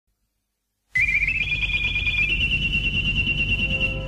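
A high electronic whistle over low static and hum, like an old radio receiver being tuned in. It starts suddenly about a second in, steps up in pitch in small jumps over the next half second, then holds steady.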